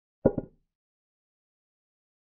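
Chess program's piece-capture sound effect: one short wooden clack with a quick second knock, about a quarter second in, as a pawn takes a pawn.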